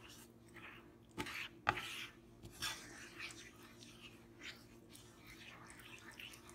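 Wooden spoon stirring a thick butter-and-flour roux in a nonstick frying pan: soft, irregular wet scraping and squelching, with two louder knocks a little over a second in.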